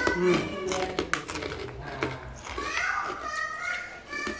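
A man hums "mmmm" and chews a mouthful of food, with sharp wet mouth clicks and smacks in the first second or so. High-pitched children's voices carry on in the background later on.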